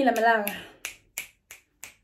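A drawn-out vocal sound trails off about half a second in, then a person snaps their fingers in a steady rhythm, about three snaps a second.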